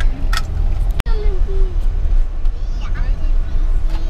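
Steady low rumble of road and engine noise inside a moving passenger van's cabin. It cuts out for an instant about a second in.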